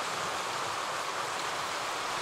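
A small woodland creek running over rocks: a steady, even rush of water.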